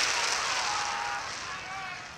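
A loud rushing noise that fades steadily away, with faint voices calling under it.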